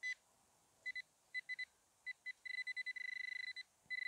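Metal-detecting pinpointer beeping at a single high pitch: a few short, scattered beeps, then a fast run of pulses for about a second near the end as it closes in on a target in the soil, going over to a steadier tone at the very end.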